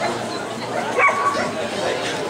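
A Siberian husky giving a short, high-pitched cry about a second in, over steady crowd chatter.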